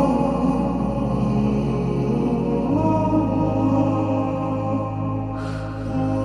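Slowed, reverb-heavy a cappella nasheed intro: layered voices hold sustained chanting chords over a low vocal drone. The low note changes about halfway through, and there is a brief breathy rush near the end.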